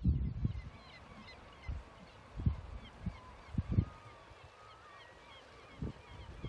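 A flock of seabirds calling at a distance, many short overlapping cries, with a few low thumps of wind on the microphone.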